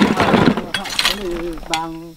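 Iron bar scraping and levering among broken rock, loose stones clattering and clinking against each other in a dense rattle for about the first half second.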